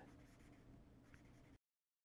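Near silence: a marker pen writing faintly on paper, which cuts to dead silence about one and a half seconds in.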